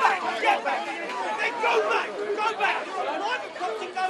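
Several people talking at once in a crowd, their voices overlapping.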